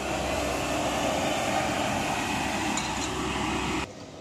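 Compact street sweeper running, a steady mix of engine and rotating brush noise, which cuts off abruptly near the end.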